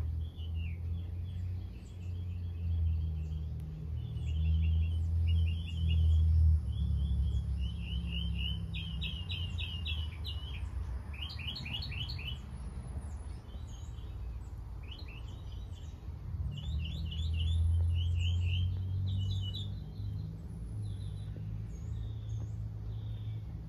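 Small birds chirping in quick repeated series of high notes, over a low rumble that is strongest in the first third and again in the last quarter.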